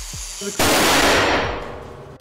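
Angle grinder cutting into an airbag's steel gas generator, then, about half a second in, a sudden loud blast that dies away over about a second and a half: grinder sparks have ignited the sodium azide propellant and the airbag inflator has gone off.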